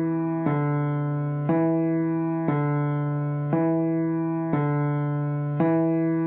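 Piano played slowly by the left hand: a low C is held down while the D and E just above it are struck in alternation, about one note a second, each note ringing and fading before the next. This is a finger-independence exercise, the fifth finger holding while fingers four and three repeat.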